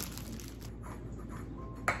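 A plastic bagel bag crinkling as it is untwisted and opened, followed by a sharp clink near the end.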